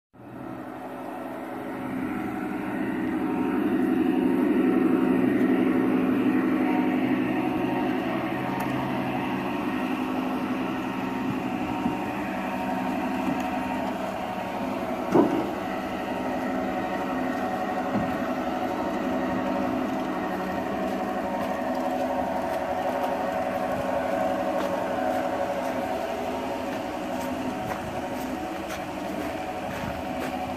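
G gauge model train, Southern Pacific Black Widow F-unit diesels pulling passenger cars, running on garden-railway track: a steady hum of the locomotive motors and gearing with wheel noise on the rails, swelling a few seconds in. One short sharp sound cuts in about halfway through.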